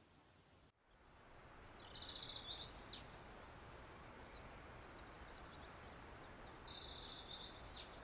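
A songbird singing rapid high trills in two bouts, over a steady background hiss of outdoor ambience.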